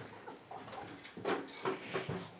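A few short bursts of laughter, the loudest a little past a second in and again near the end.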